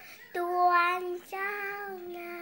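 A young girl singing, holding two long notes at about the same pitch with a short break between them.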